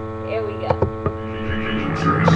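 Steady electrical mains hum, a buzz with many even overtones, with a few brief clicks near the middle.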